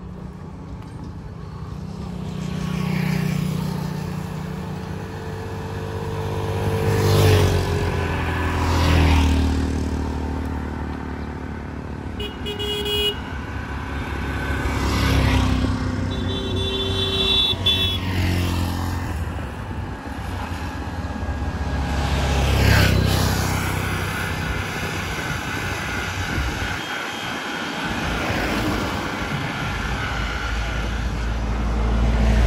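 Motor vehicles passing one after another on a paved road, each swelling up and fading away, about five pass-bys. A vehicle horn sounds twice, about twelve seconds in and again for about two seconds around sixteen seconds in.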